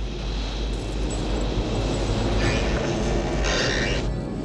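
Deep, steady mechanical rumble from a sci-fi film soundtrack, with a hissing rush rising over it about two and a half seconds in and fading away just before the end.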